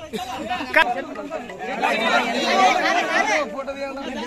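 A crowd of men talking over one another. The chatter is busiest from about two seconds in.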